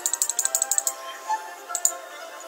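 Computer mouse clicking rapidly, about ten clicks a second for the first second, then a couple more clicks near the end, over steady background music.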